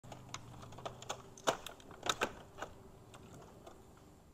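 Irregular light clicks and clacks of a 1983 Honda Motocompo's handlebars and plastic parts being folded down into its body, with the sharpest knocks about a second and a half and two seconds in.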